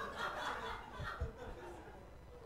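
People chuckling and laughing quietly, with a little murmured talk.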